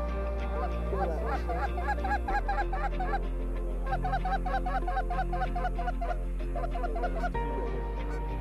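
Canada geese honking in quick, evenly spaced series of about four calls a second, in two runs, the first starting about half a second in and the second about four seconds in. Background music with steady held low notes runs underneath.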